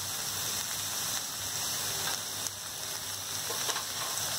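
Spinach, onion and green chillies sizzling in an iron kadai: a steady, even hiss with a few faint crackles near the end.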